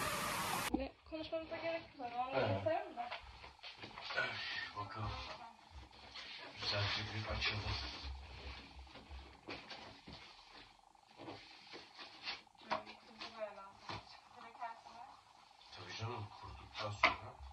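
Quiet, low voices and scattered knocks, taps and rustles of a cardboard box being handled and opened. The box holds a 1.80 m artificial Christmas tree.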